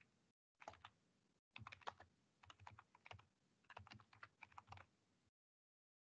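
Faint typing on a computer keyboard: quick runs of key clicks in short bursts, stopping about five seconds in.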